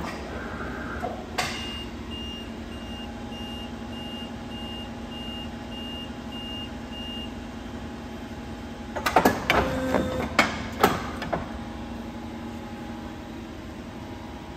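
Steady hum of a Polar 76EM guillotine paper cutter's motor running. A series of short, evenly spaced high beeps, about two a second, sounds for about six seconds after a knock early on. A cluster of loud knocks and clatter follows about nine seconds in.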